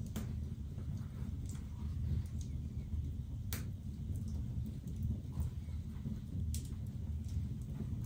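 Hand-stitching leather with two needles and thread: faint handling sounds and a few sharp small clicks, the clearest about three and a half seconds in, over a steady low hum.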